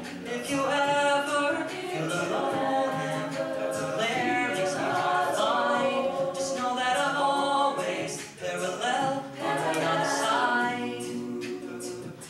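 Mixed a cappella group singing in harmony, with a steady percussive beat under the voices.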